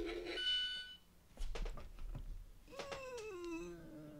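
Electronic lie-detector toy's handset sounding: a steady tone stops just after the start, a short high beep follows, and after a pause of near silence with a few small clicks a drawn-out electronic tone slides down in pitch and holds low, its verdict after a scan.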